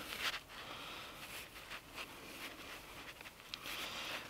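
Fine steel wool being pulled apart and stretched by hand, a faint rustling with scattered small crackles.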